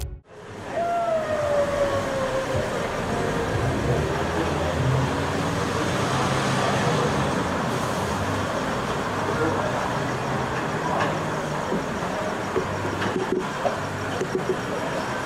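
City street traffic noise, a steady hum. About a second in, a tone falls slowly in pitch, as a vehicle passes. A few clicks come near the end.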